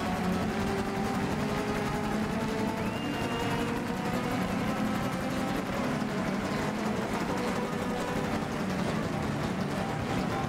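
Two steel-string acoustic guitars played together live, with fast, dense rhythmic strumming under steady held notes.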